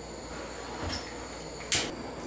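Gas blowtorch flame hissing steadily and faintly as it heats a vinyl wrap to soften it. A short, louder hiss comes near the end.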